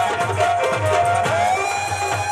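Live Punjabi folk music: a woman singing through a microphone over a hand-drum rhythm, her voice sliding up into a long held note about one and a half seconds in.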